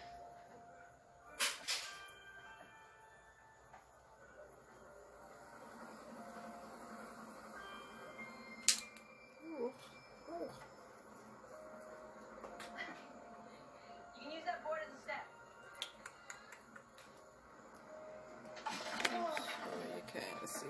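Faint background music and voices, broken by a few sharp clicks; the loudest click comes about nine seconds in.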